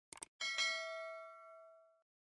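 Subscribe-animation sound effect: a quick double mouse click, then a notification-bell ding that rings with several steady tones and slowly fades away.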